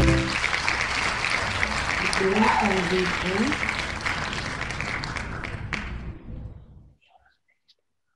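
Recorded crowd cheering and applause, the winner sound effect of an online name-picker wheel, played through the computer's audio to announce the pick. It has a few whoops about two to three seconds in and fades out, ending about seven seconds in.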